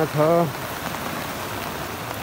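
Steady rain falling, an even hiss that carries on after a man's voice stops about half a second in.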